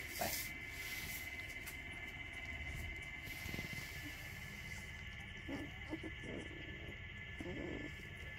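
Sleeping puppies giving a few faint grunts and whimpers, over a steady high-pitched background tone.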